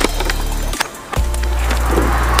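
Machete chopping into a green coconut: a few sharp strikes, at the start and again just under a second in and soon after, over background music with a deep bass line.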